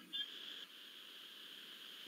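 A pause with only faint, steady background hiss on a video-call line, and a brief faint blip just after the start.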